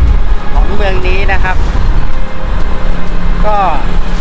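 A man's voice speaking a few short phrases over a steady low rumble.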